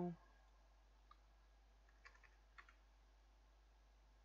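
A few faint computer keyboard keystrokes: a single click about a second in, then a short run of clicks past the middle, over a quiet steady background.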